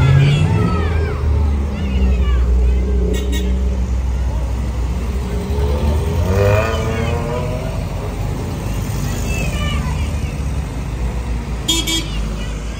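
Old cars driving slowly past at close range one after another, their engines running at low revs, with people in the watching crowd talking.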